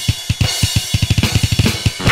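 Deathcore drum break: rapid, uneven kick drum strikes, about ten a second, with cymbals and snare, and the sustained guitar sound largely dropped out between the hits.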